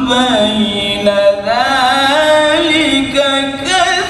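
A man reciting the Qur'an in melodic tilawah style, holding long ornamented notes that wind up and down in pitch. The melody climbs higher from about halfway through.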